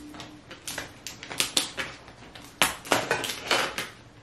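Cooked Dungeness crabs being broken apart by hand: a run of irregular sharp cracks and snaps of shell as the legs are broken off, loudest about two and a half to three seconds in.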